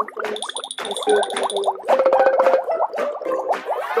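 Cartoon sound effects, springy boings and a high held ring, over light background music made of many short plucked notes.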